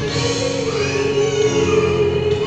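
A woman singing into a handheld microphone, holding long notes, with a slide down in pitch about half a second in.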